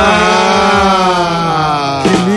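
A person's long, drawn-out vocal 'aaah', held on one sinking pitch for about two seconds as a reaction to a pun.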